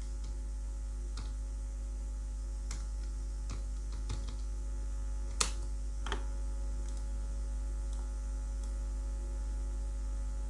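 Steady electrical mains hum with a few scattered computer keyboard key presses and clicks, the sharpest about five and a half seconds in.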